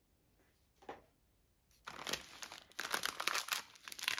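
Clear plastic wrapping around a bundle of diamond-painting drill bags crinkling as it is picked up and handled. There is one brief rustle about a second in, then continuous crackling from about two seconds in.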